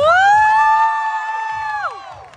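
Several voices holding one long, high shout together: it swoops up at the start, holds steady for nearly two seconds, and falls away at the end.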